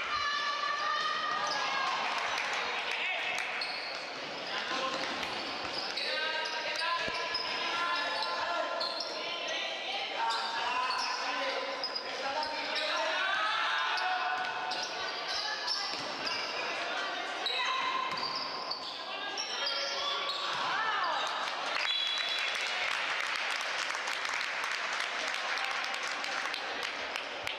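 Basketball game sounds in an echoing gym: sneakers squeaking on the court and the ball bouncing, mixed with players' and spectators' voices.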